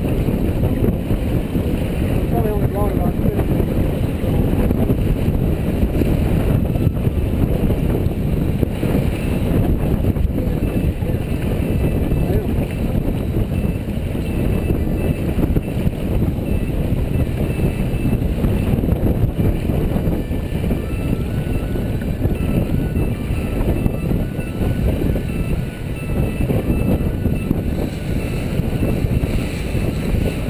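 Wind buffeting the microphone of a Tayana sailboat under sail, with water rushing along the hull, steady throughout.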